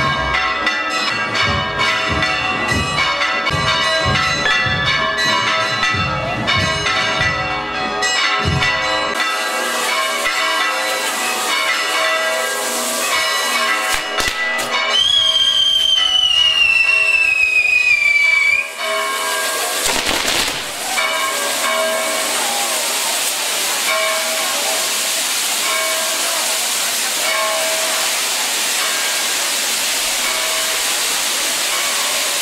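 Bells ringing for roughly the first half. Then a few sharp pops and a firework whistle falling slowly in pitch for about four seconds, followed by the steady hiss of spark-spraying firework fountains.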